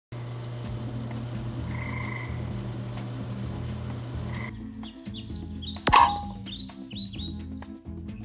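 Crickets chirping about twice a second over a low, steady hum. About halfway through this gives way to a short musical sting of falling chirpy tones with one loud hit just before six seconds.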